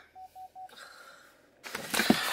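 Three short electronic beeps at one pitch in quick succession, followed near the end by a brief rush of rustling noise.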